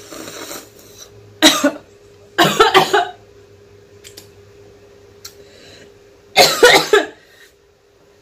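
A woman coughing in three short, loud bouts, the second one longer. She is reacting to the burning heat of an extremely spicy Toe of Satan lollipop held in her mouth.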